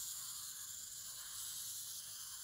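Zoids Wild Gusock wind-up kit walking under its own spring power, its small plastic gearbox giving a faint, steady whirr.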